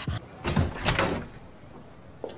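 A door being opened and swung, with two dull knocks about half a second apart within the first second.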